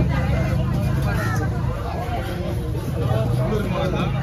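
Busy market chatter: several background voices talking over a steady low engine hum.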